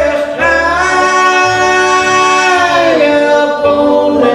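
Bluegrass band playing live: one long held lead note, sliding down about three-quarters of the way through, over upright bass notes.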